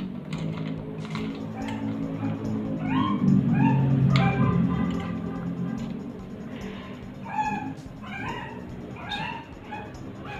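Shih Tzu puppy whining and yipping in many short, high cries that rise in pitch, over background music that is loudest in the first half.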